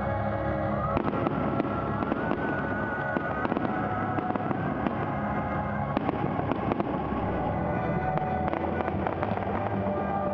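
Fireworks going off in quick succession over steady music, with a run of sharp bangs and crackling that starts about a second in and grows busier near the end.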